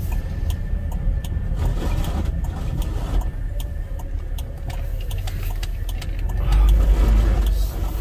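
A car's engine and road noise heard from inside the cabin, a steady low rumble that grows louder about six and a half seconds in as the car pulls away.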